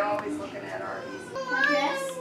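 Speech only: people talking in the background, a child's high voice among them, clearest in the second second.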